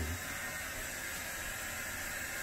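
A steady, even hiss with nothing else happening.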